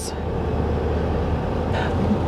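A vehicle driving slowly on pavement: a steady low engine drone with tyre and road noise, without pauses or changes.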